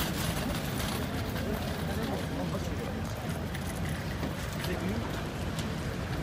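Steady street ambience: the hum of traffic and idling vehicles mixed with indistinct voices of people standing around.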